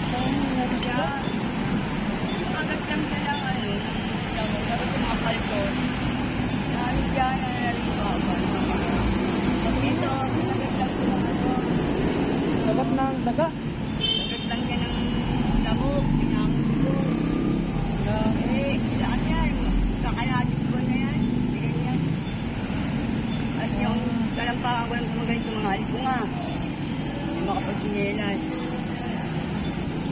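Steady road traffic noise from passing vehicles, with people talking over it.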